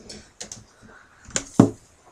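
A few light clicks, then two sharp thumps in quick succession about a second and a half in, the second one loud and heavy.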